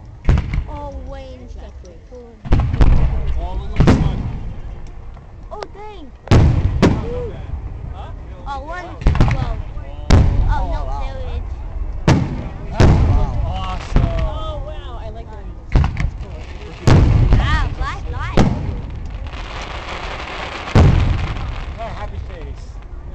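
Aerial fireworks shells bursting overhead: about fourteen sharp booms, one to two and a half seconds apart, each trailing off in a rumbling echo.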